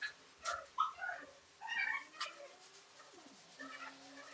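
A few short, high calls like a small animal's, with some sharp clicks and plastic rustling in between.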